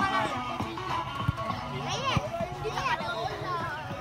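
Children's voices calling and chattering over background music, with two short sharp knocks about a second apart.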